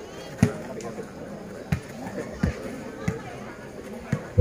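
A volleyball bouncing on the hard court between rallies: a few separate dull thumps at uneven gaps, the first the loudest, over faint crowd voices.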